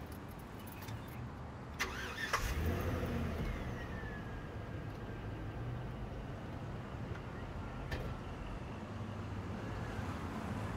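Chevrolet Silverado pickup's engine started with the key, heard from inside the cab: a brief crank about two seconds in, then it catches, flares up and settles into a steady idle, with a faint whine falling in pitch as it settles. A single click near the end.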